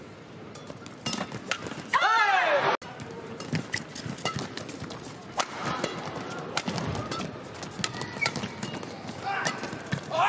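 Badminton rally: rackets striking the shuttlecock in sharp clicks, with shoes squeaking on the court mat. A loud, wavering high-pitched sound about two seconds in cuts off abruptly.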